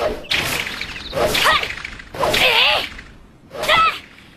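Animated sound effects of birds swooping past: a run of about four swooshing swishes, each carrying a high screeching cry that rises and falls, about a second apart.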